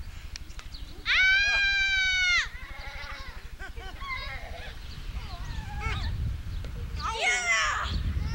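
A child's high scream, held level for about a second and a half before dropping off, then children's chatter and a shorter, wavering squeal near the end.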